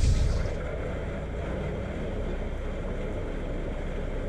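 Narrowboat hull pushing through thin canal ice: a steady crunching and crackling, with the boat's engine running low underneath.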